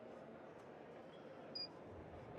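Quiet room tone: a faint, steady hiss with one brief, faint high blip about one and a half seconds in.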